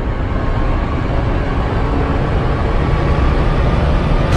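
Cinematic rumble effect for an animated logo intro: a loud, steady, low rumbling noise that holds at an even level.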